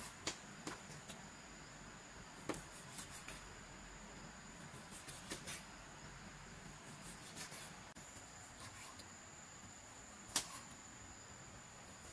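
A kitchen knife cutting pork belly on a round wooden chopping board, the blade knocking on the wood in scattered light taps, with one sharper knock near the end.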